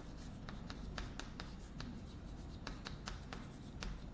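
Chalk writing on a blackboard: a rapid, irregular series of sharp chalk taps and strokes as characters are written.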